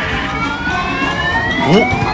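Claw machine's electronic sound effect, a slow rising tone as the claw lifts, over steady in-store background music.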